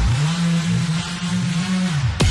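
A drumless break in a drum-and-bass track: a deep synth bass note slides up at the start and then holds with a slight wobble, over a hiss-like noise wash.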